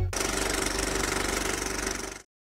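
Logo sting sound effect: a fast, even mechanical rattle like a small engine running, steady in level throughout.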